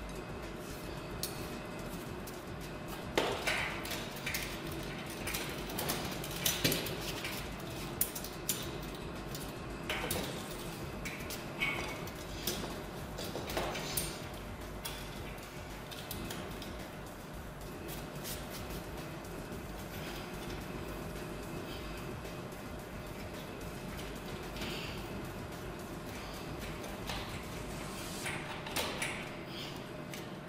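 Scattered metallic clinks and knocks of copper pipe and fittings being handled and fitted together by hand, over a steady background, busiest in the first half and again near the end.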